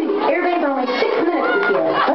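A vocal from a recorded song played loud over a hall's PA, its pitch sliding smoothly up and down without pause.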